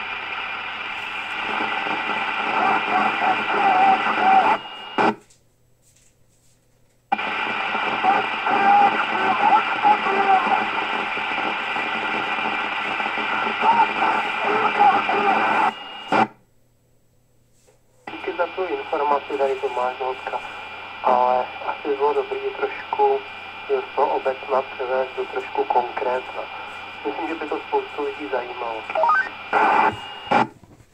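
K-PO DX 5000 CB radio receiving voice transmissions on channel 28 FM: thin, hissy speech from its speaker. It comes in three overs, and the squelch shuts the radio abruptly with a short click after each one, leaving about two seconds of silence between them.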